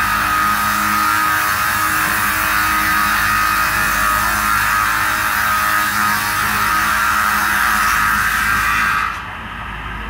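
Roller-fed multi-blade circular rip saw cutting wood: a loud, steady sawing noise with a high whine. About nine seconds in the cutting stops and it drops to the quieter steady run of the machine idling.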